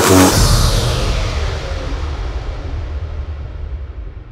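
Hardstyle electronic dance music: a hit just after the start, then a noisy swoosh that falls and fades away over about three seconds above a low rumbling bass, the track dropping out after its build-up.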